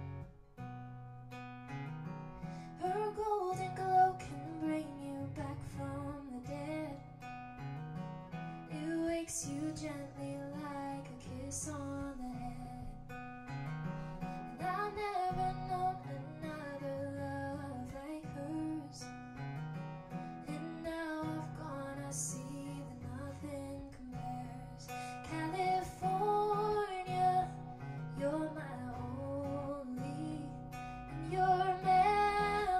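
A woman singing to her own strummed acoustic guitar. The guitar plays alone at first, and her voice comes in about three seconds in.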